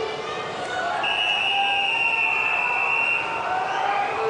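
A referee's whistle sounding one long, steady blast of a little over two seconds, starting about a second in, over crowd and voice noise in the pool hall. In swimming the long whistle is the signal for swimmers to step onto the starting blocks.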